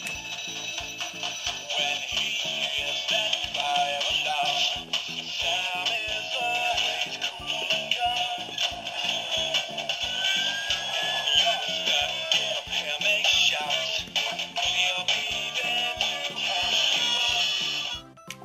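Tinny electronic music with a steady beat from the sound unit of a Fireman Sam Jupiter toy fire engine, played through its small speaker.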